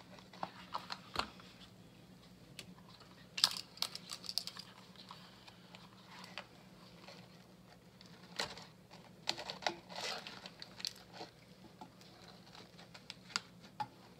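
Aluminium foil crinkling, with light knocks and scrapes, as silicone pinch mitts grip a foil-wrapped meatloaf in a pressure cooker's metal inner pot. The sounds come in short, scattered bursts over a faint low hum.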